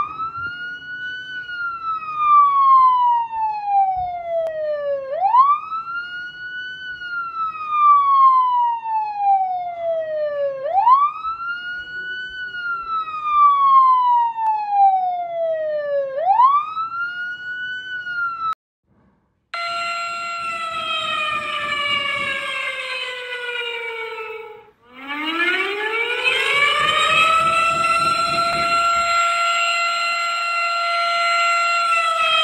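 A siren wailing in slow cycles, three times over, each rising quickly and then falling slowly over about five seconds. After a short break a second siren sounds, falling in pitch, then winding up from low to a steady high tone.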